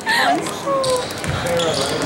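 Spectators' voices and shouts in a gym, with a basketball bouncing on the hardwood floor as a player dribbles.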